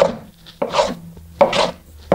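Small hand plane shaving wooden hull planking in a steady run of strokes, about one every three-quarters of a second, each a short hiss that starts sharply and fades. The planking is being hollowed into an inside curve and planed down until the glue lines of the planking disappear.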